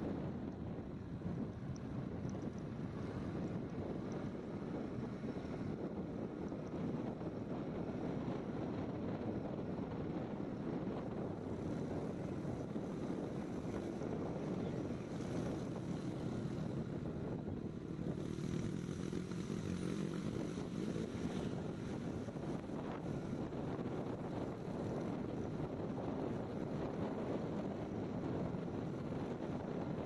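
Steady wind rush over the microphone, mixed with the running and road noise of a moving Honda scooter.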